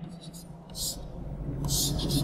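Chalk writing on a chalkboard: two short strokes, one near the middle and one near the end.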